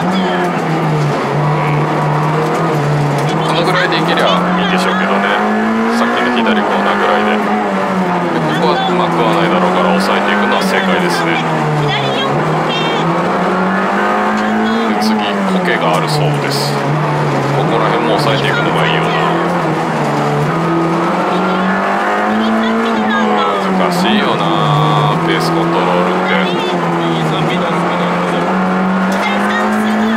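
Honda Integra Type R (DC2) rally car's 1.8-litre four-cylinder VTEC engine, with a 5Zigen exhaust manifold and Fujitsubo muffler, heard from inside the cabin at full stage pace. Its revs climb and fall back again every few seconds as it is driven through a run of corners.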